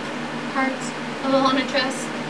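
A woman speaking in a couple of short phrases, over a steady low room hum.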